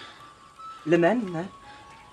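A short line of film dialogue spoken in Aramaic about a second in, with soft background music underneath.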